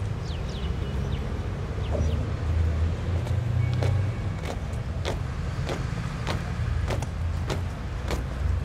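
Boot heels of a small marching party striking stone paving in step, a sharp regular click about every 0.6 s starting a few seconds in, over a steady low rumble.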